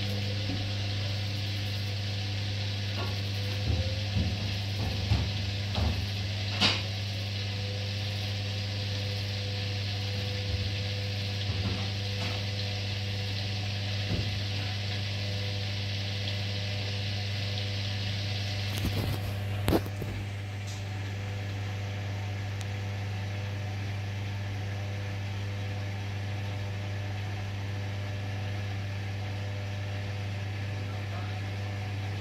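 Hoover DynamicNext front-loading washing machine running with its drum turning: a steady low motor hum with a faint whine above it and a hiss, plus a few knocks in the first two-thirds. The hiss eases about two-thirds of the way through while the hum carries on.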